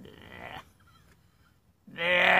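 A woman's voice trailing off faintly, then a pause of about a second. Near the end she starts a loud, held, steady-pitched vocal noise, a mock sound effect rather than words.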